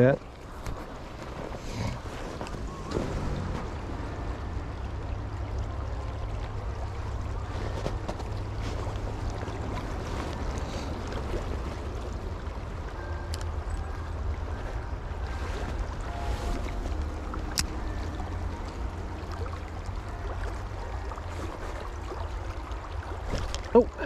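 Stream water running steadily, with a low wind rumble on the microphone throughout.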